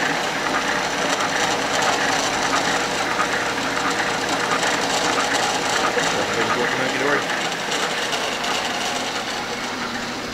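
Refurbished dough roller machine running: its electric motor and side drive chain turning the plastic rollers with a steady mechanical whir.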